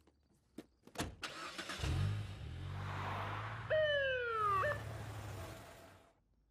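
A car door clicks open and thuds shut, then a car engine starts and runs steadily. About four seconds in, a police siren gives one short downward-sliding whoop.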